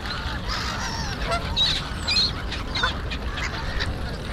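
Waterbirds calling on open water: a scatter of short calls that bend in pitch, loudest about one and a half and two seconds in, over a steady low rumble.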